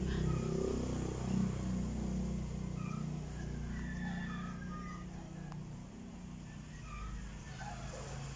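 A steady low motor hum, like a vehicle engine running, with a few faint short high tones above it.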